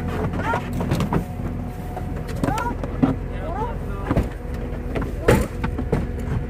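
Goats crammed inside a car bleating: a string of short, high calls, several hooking upward in pitch, over a steady low engine hum.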